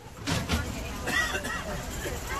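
Passengers talking over the low rumble of a cable car in motion, with two clunks about half a second in.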